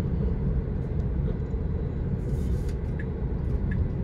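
Steady low tyre and road noise inside the cabin of an electric Tesla Model 3 driving along, with a few faint short ticks.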